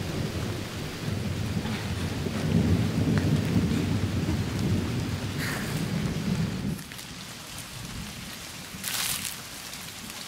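Heavy rain pouring down with a low rumble of thunder that fades out about two-thirds of the way through, leaving the rain alone; a short hiss stands out near the end.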